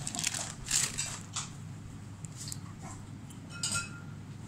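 Jewellery and its plastic packaging being handled: a few short crinkles of a plastic packet and light clinks of metal bangles, the last clink near the end ringing briefly.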